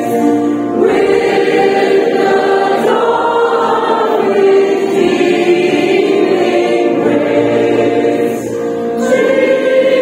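Mixed choir of girls and adults singing a Christmas carol, holding long notes in phrases of a couple of seconds each.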